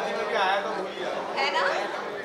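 Several voices talking over one another: indistinct crowd chatter.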